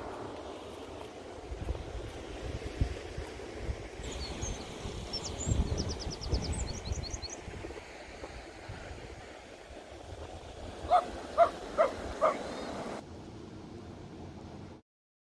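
Wind buffeting the microphone with a steady rumble. A small bird gives a quick run of high chirps about five seconds in. Near the end a bird gives four short, loud calls, evenly spaced.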